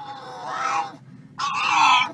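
Pug crying out in excited, high-pitched wails: a long call sliding slightly down, then a louder one about a second and a half in. The cries come in answer to the word "PetSmart".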